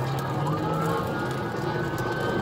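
Police car siren wailing in a slow rising and falling sweep, over the steady engine and road noise of the patrol car travelling at speed.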